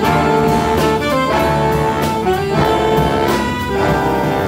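Big band playing jazz: the saxophone and brass sections sound held chords in short phrases that break and re-attack about every second and a quarter.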